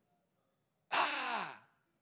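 A man's loud, breathy vocal exhale, falling in pitch, lasting under a second, about a second in.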